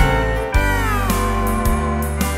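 Instrumental break in a country ballad: a steel guitar slides down in pitch about half a second in and holds the lower note, over bass and a steady beat.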